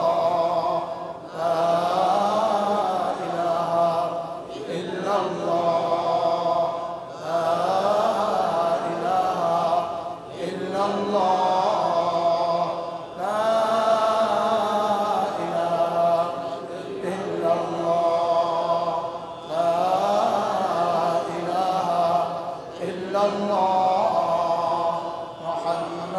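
A man's voice chanting in a melodic, sing-song tune in phrases of about three seconds, each gliding up and down in pitch, with brief breaths between them.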